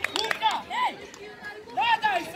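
Several voices shouting short calls across an open football pitch, some of them high-pitched children's voices, with the loudest shout near the end.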